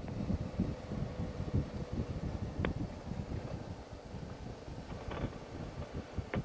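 Wind buffeting the microphone over a low, uneven rumble as a Suzuki V-Strom 650 is ridden along a dirt trail, with a faint steady hum and a couple of short clicks.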